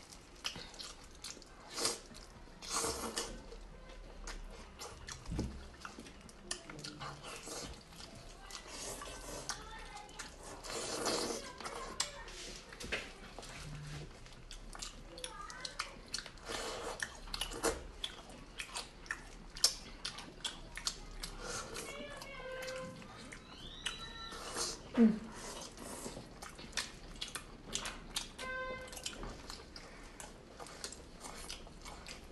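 Close-up wet chewing, lip smacking and sucking while eating braised fatty pork knuckle, a steady run of short sticky clicks and smacks. A brief "mm" hum comes about 25 seconds in.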